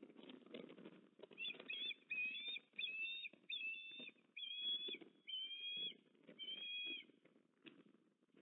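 Eastern (Australian) osprey calling: a series of about seven short chirping whistles, evenly spaced and each about half a second long, starting about a second and a half in. Underneath is a soft rustling in the stick nest.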